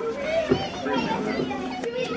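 Background chatter of children and adults talking, with no clear words.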